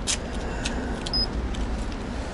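Steady low outdoor rumble of a car park, with a couple of light clicks as a handheld paint thickness gauge's probe is set against a car door panel, and a short high beep just past the middle.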